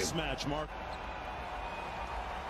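Low, steady court ambience from a televised basketball game, after a man's voice finishes speaking in the first half-second.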